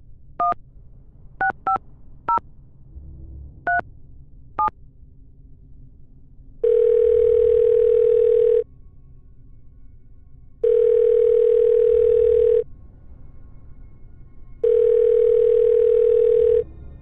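Telephone keypad tones as a number is dialed: six short two-note beeps at uneven intervals. Then the line rings: three steady ringing tones, each about two seconds long with two-second gaps, thin and band-limited as if heard through the handset.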